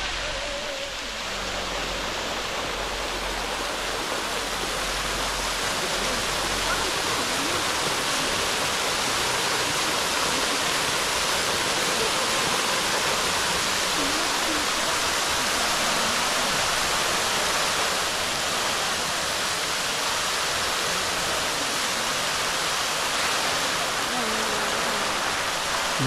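Water fountain jets spraying and splashing down into the basin: a steady, even rush of falling water.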